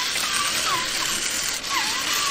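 Small geared motors of a Kosmos Proxi six-legged walking robot toy whirring steadily as it moves its arms, head and legs.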